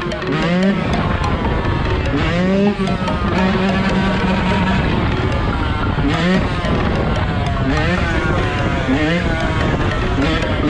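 Yamaha YZ125 two-stroke dirt bike engine revving up and dropping back several times during a wheelie, under background music with a voice singing or rapping.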